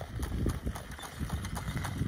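A trotting harness horse's hooves striking a hard, frozen track in a quick, even rhythm as it pulls a sulky past.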